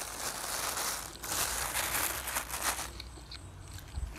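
Thin plastic bag crinkling and rustling as it is handled, for about three seconds, then dying down to a few soft ticks.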